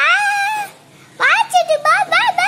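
A baby's high-pitched squealing: one long wavering squeal, a short pause, then a quick run of short squeals that rise and fall in pitch.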